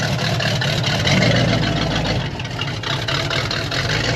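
Chevrolet Corvette C3's V8 running at low speed, a steady low exhaust note as the car pulls past and away, swelling a little about a second in.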